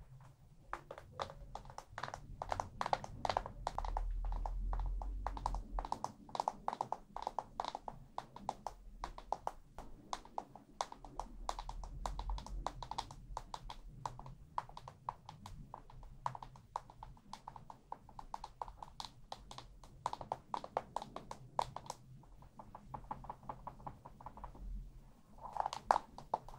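A pressed-powder compact and makeup tool handled close to the microphone: rapid, uneven taps and scratchy clicks, with a low handling rumble a few seconds in and again midway.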